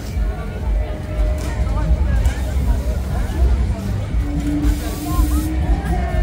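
Funfair crowd ambience: scattered voices of people in the crowd and faint fairground music over a steady low rumble, with a few short hissing bursts.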